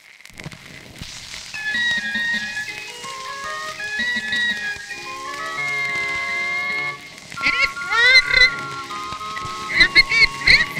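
A barrel organ playing a tune from perforated card music, in held, steady notes that swell in from silence. From about seven and a half seconds, wavering, sliding high tones join the tune.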